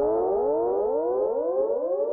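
Instrumental music outro: a synthesizer tone gliding upward again and again through an echo effect, the repeats overlapping in a rising cascade, with no beat underneath.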